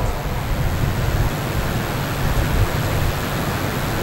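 Steady background noise, an even hiss with a low hum beneath it, during a pause in speech.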